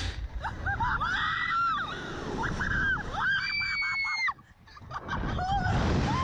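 Riders screaming as a slingshot ride launches: a run of short, high shrieks, then one long high scream that breaks off a little past four seconds, followed by more shrieks, over the rumble of wind rushing past the microphone.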